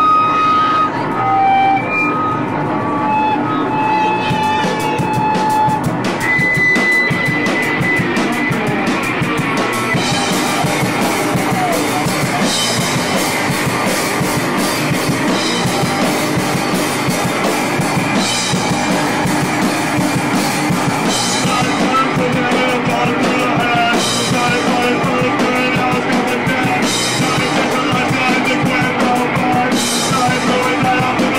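Punk rock band playing live and loud, with drum kit and electric guitar. A few held high notes sound over the first several seconds, and cymbal crashes come in regularly from about ten seconds in.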